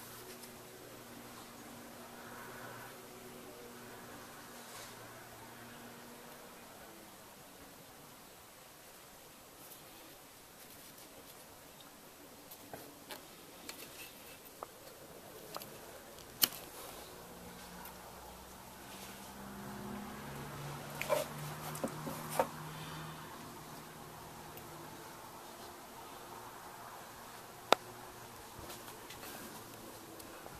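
Quiet handling of the plastic fuel-filter fittings and clear bleed tubing: faint taps and scattered short clicks, a few sharper ones about halfway through and near the end, over a low steady hum.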